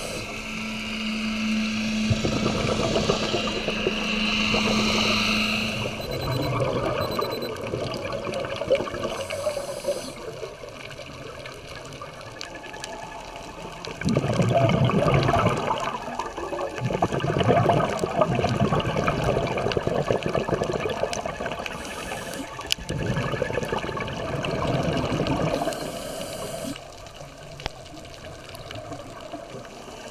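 Scuba diver breathing through a regulator underwater: rushing bursts of exhaled bubbles lasting a few seconds each, with short hissing inhalations between them, heard mainly in the second half. A steady low hum runs through the first several seconds.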